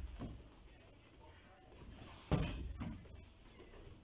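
A kick striking a partner's held-up boxing glove with a sharp thud about two seconds in, followed by a fainter knock half a second later.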